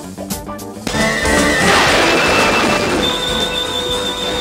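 Dramatic TV score with the spinning-transformation sound effect: a loud burst of noise about a second in, over the music, then a held high tone near the end.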